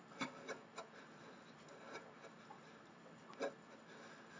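Faint, quiet room with a few short ticks and rubs, mostly in the first second and one near the end, from a person moving in place doing fast shoulder shrugs with straight arms.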